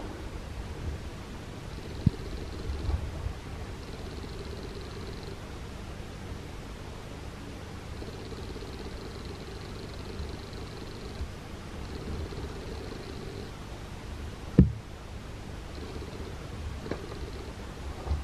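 Steady low outdoor rumble with a faint hum, broken by a small click about two seconds in and a sharper, louder click near the end.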